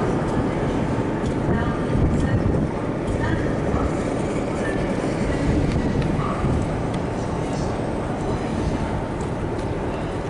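A passenger train approaching along the station lines, a steady rumble with faint voices in the background.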